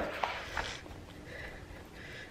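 Faint rubbing and squishing of hands working dry seasoning into raw oxtail pieces in a plastic bowl.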